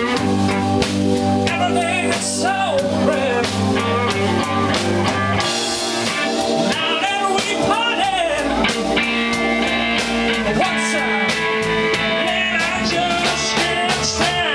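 Live blues band playing an instrumental break: electric guitar lead with bent, wavering notes over Hammond organ, electric bass and drum kit.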